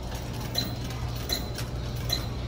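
Coins being fed into a laundromat's coin-operated washer, with small clicks and a short high beep about every three-quarters of a second, over the steady low hum of the machines.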